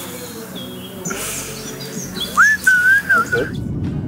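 Songbirds singing: short high chirps, then a clear, wavering whistled phrase about two and a half seconds in.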